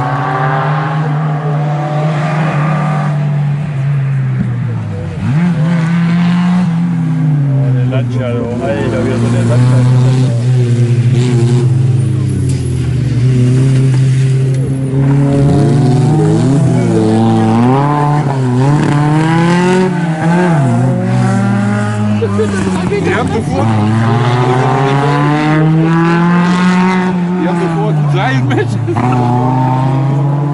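Historic rally car engines revving hard through the corners, the pitch climbing under acceleration and falling away again and again as the drivers lift and change gear, with two cars running one after the other.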